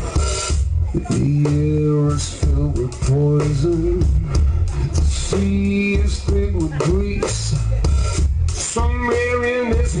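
Live blues-rock band playing: drums and bass keep a steady pulse under a lead line that bends and slides in pitch.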